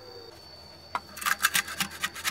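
A wooden stick scraping and prodding at a fried egg in a metal frying pan: a click about a second in, then a quick run of short scrapes. The stick is testing whether the sun-cooked egg has set firm.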